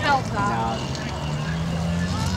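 Junior saloon autograss cars racing on a dirt track, their small engines making a steady drone that settles to one held pitch about a second in, with people talking nearby over it.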